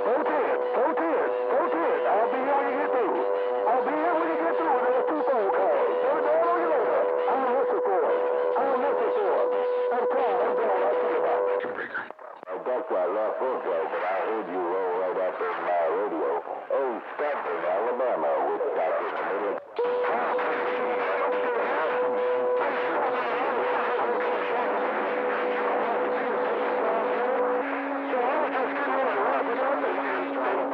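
Vintage tube communications receiver playing AM radio traffic: several distant stations talking over one another, too garbled to make out, with a steady heterodyne whistle from carriers beating together. The whistle drops out about twelve seconds in, comes back around twenty seconds, and a second, lower whistle joins it near the end.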